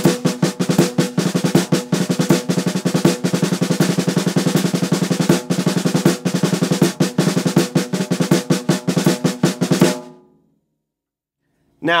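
Snare drum played with sticks in a fast, even stream of strokes, single strokes doubling into double-stroke rolls, over quarter notes on the hi-hat. The playing stops about ten seconds in.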